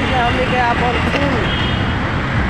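Steady road traffic noise, with people's voices talking over it.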